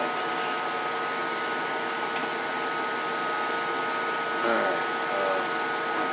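Steady hum and air noise of bench electronics and cooling fans, with a few thin whining tones held throughout. Light clicks from the sheet-metal amplifier cover being handled, and a brief low mumble about two-thirds of the way in.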